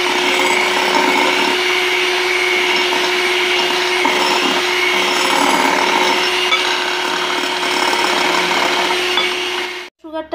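Electric hand mixer running at a steady speed, its wire beaters whipping egg whites and powdered sugar in a glass bowl, with a steady motor hum. It cuts off suddenly near the end.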